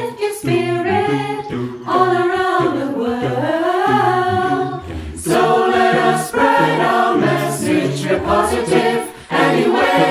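Mixed virtual choir of women's and men's voices singing an a cappella pop song in close harmony, over a sung bass line that repeats in short low notes.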